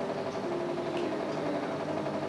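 Soft background music of long held tones, a steady drone whose main note steps slightly lower about halfway through.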